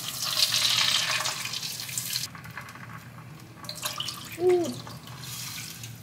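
Water poured from a measuring cup into a hot pan of melted butter, oil and miso, splashing and hissing for about two seconds before it cuts off. A short hummed note comes a little after the middle.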